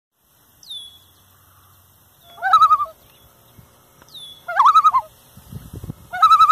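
Bird calls: a high, falling whistle heard twice, and a louder, lower warbling call that comes back three times.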